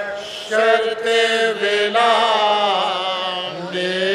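Soz-khwani: male voices chanting a Shia elegy in long, held melodic phrases that glide between notes. There is a brief break about half a second in before the next phrase begins.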